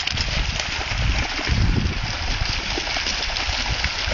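Sea water washing and splashing at the shoreline, a steady rush with an uneven low rumble.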